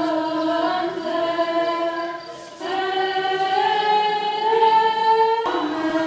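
Choir singing Orthodox liturgical chant unaccompanied, in long held chords that move slowly. The singing thins briefly about two and a half seconds in before the next phrase starts, and the sound changes abruptly near the end.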